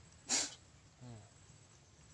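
A man's single short, sharp blast of breath through the nose, like a snort or stifled sneeze. A moment later he gives a low "hmm".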